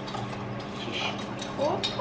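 Soft clinks and scraping: a teaspoon stirring tea in a glass while a hand-held vegetable peeler scrapes a carrot.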